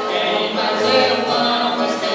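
Live Brazilian cantoria: voices singing long held notes with guitar accompaniment.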